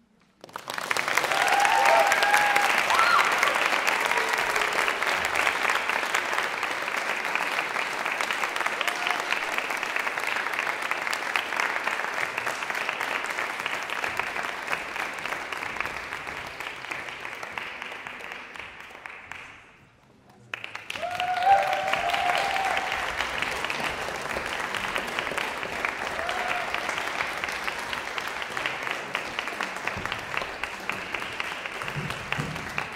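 Audience applauding in a concert hall. It starts suddenly about half a second in, dies away around twenty seconds in, then starts again a second later.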